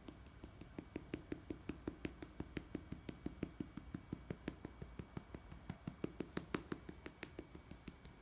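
A hand patting a Siamese cat's rump in a quick, even rhythm of soft pats, about five a second, with a few sharper ones a little past the middle.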